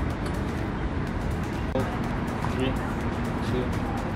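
Indistinct voices and background music over a steady low rumble of background noise.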